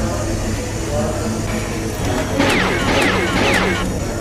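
Glassware being hand-washed at a sink: a steady background hum, then from about halfway in a quick run of squeaky, clinking glass sounds that fall in pitch.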